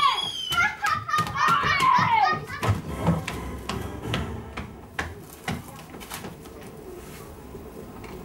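Children's wordless shouts with sliding pitch in the first two seconds, then a quick run of footsteps knocking on a hollow wooden stage floor as they run across it.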